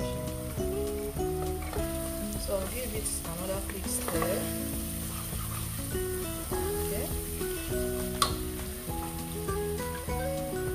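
Onions and spices sizzling as they fry in a pot, stirred with a wooden spoon, under steady instrumental background music. One sharp tap about eight seconds in.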